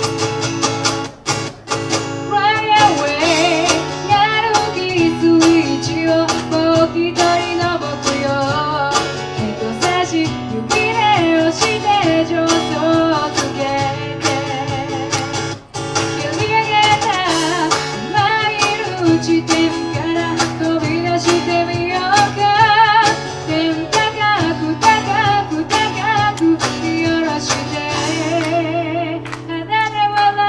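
Live band music: a woman singing with vibrato over strummed acoustic guitar, backed by cajón and electric guitar.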